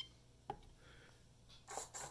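Near-silent room tone opening with the tail of a short electronic beep from a FlySky FS-i6X radio transmitter as a key is held to confirm a menu setting. One soft, sharp click follows about half a second in.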